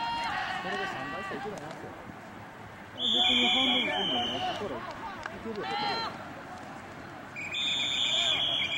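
Two long blasts of a referee's whistle, the second starting near the end, over shouting voices from players and sideline.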